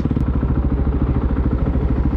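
Motorcycle engine running at low road speed, heard from on the bike, with a steady, fast-pulsing low exhaust note.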